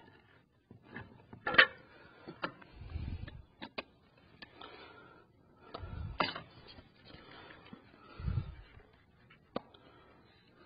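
Handheld can opener being worked around a steel food can: scattered sharp clicks and scrapes, the loudest about a second and a half in, with a few dull thuds as the can is handled.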